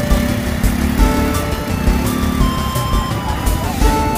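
Background music with a steady beat and a melody of long held notes that step from one pitch to the next.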